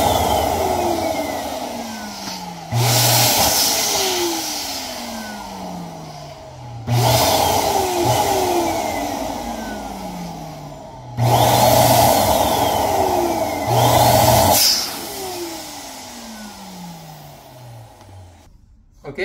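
Electric balloon pump inflating a plastic balloon basketball, run in short bursts: it switches on suddenly four times, about every three to four seconds. Each burst is a loud hum and rush of air, and the motor then winds down with a slowly falling whine.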